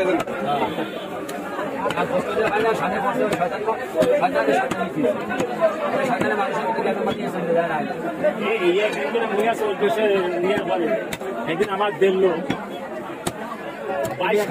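Many voices talking over one another in a busy crowd, with scattered short clicks and knocks, which fit the knife striking the wooden chopping block.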